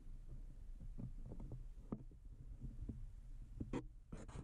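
A low steady hum with soft, irregular thumps and knocks over it.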